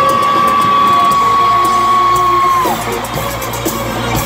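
Live band music at a loud concert, with a male singer holding one long, steady high note that breaks off about two-thirds of the way through, the crowd audible beneath.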